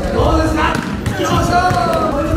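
A volleyball being bumped and set by hand in a school gymnasium, with players' drawn-out shouted calls between the sharp ball contacts.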